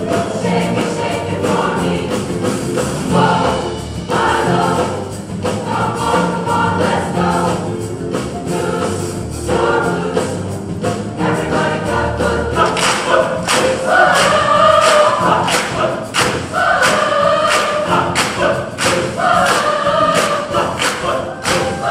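Large mixed high-school choir singing an upbeat song over accompaniment with a steady beat; the voices grow louder and higher from about 13 seconds in.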